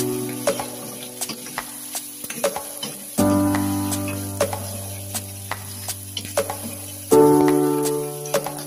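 Squid frying in a metal wok, stirred with a wooden spatula that knocks against the pan at irregular moments. Under it, background music plays long held chords that start afresh about three seconds in and again near the end, each fading away.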